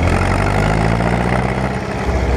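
Farm tractor's diesel engine running as it drives, its pitch rising slightly over the two seconds.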